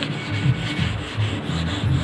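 Sheet of 2000-grit wet sandpaper rubbed back and forth by hand over the painted metal of a refrigerator door, wet-sanding the fresh black and clear lacquer before polishing.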